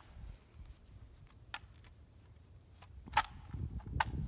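Footsteps shuffling on dry leaf litter: a few faint crunches and clicks, the most distinct a little after three seconds in, over a low steady rumble.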